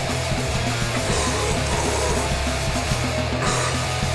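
Fast, loud crustgrind / thrash punk: distorted electric guitars and bass over rapid, driving drums, playing steadily throughout.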